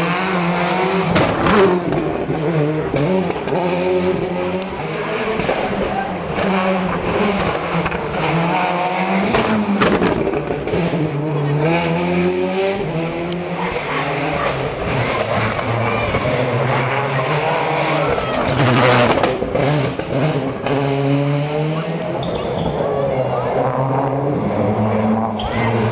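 Rally car engines on a tarmac special stage: a car brakes into a hairpin and accelerates hard away, its revs climbing and dropping through repeated gear changes, with sharp cracks from the engine among the shifts.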